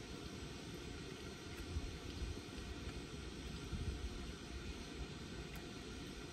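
Steady low rumble and hiss of background noise inside a car's cabin.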